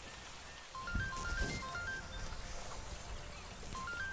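Mobile phone ringtone: a simple melody of short beeping notes stepping between two or three pitches. It starts about a second in and begins again near the end.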